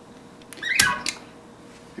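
A single sharp click-thump about a second in: a guitar looper pedal's footswitch being stomped to start recording.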